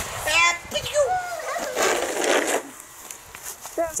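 A toddler's voice, high-pitched wordless calls and squeals, with a short hissing noise about two seconds in.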